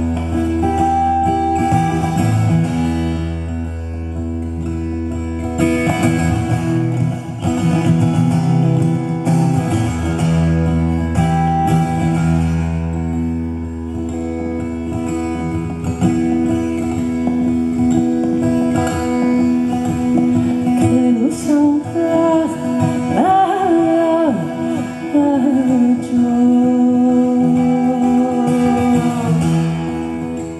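Solo steel-string acoustic guitar playing an instrumental passage, with sustained ringing notes and a low bass note held through the first half.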